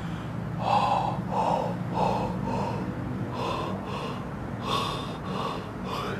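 A person gulping air in a run of short, sharp gasping breaths, about eight in quick succession.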